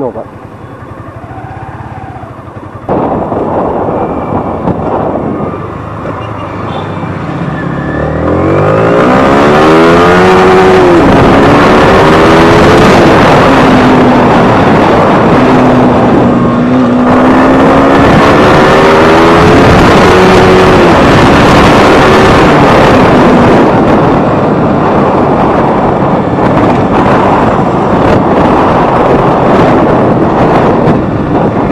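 Yamaha R15 V3 BS6's 155 cc single-cylinder engine, at first running quietly, then revving up sharply about eight seconds in as the bike pulls away. It carries on under load at road speed, its pitch rising and falling with the throttle and gear changes, under loud wind rushing over the microphone.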